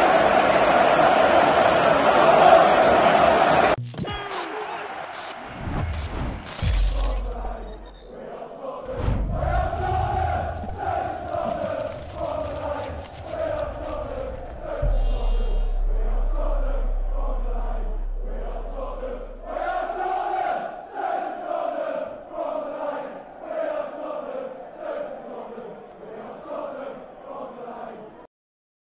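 A large stadium crowd chanting and cheering loudly, cut off suddenly about four seconds in. Then an outro music track with sound-effect hits and low booms.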